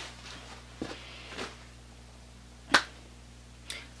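A few short, faint clicks and rustles and one sharp, loud click a little under three seconds in, over a faint steady low hum.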